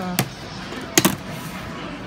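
Two sharp plastic knocks, the second louder, about a second apart, as a Guitar Hero guitar controller is handled on its display stand.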